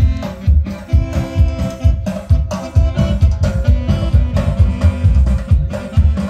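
Live band playing an instrumental passage of a song, amplified through large PA speaker stacks, with a steady beat.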